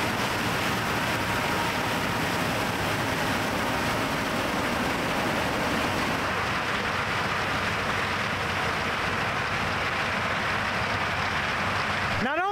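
John Deere combine running as it harvests standing corn: a steady, even rushing noise, dipping slightly in its higher tones about halfway through.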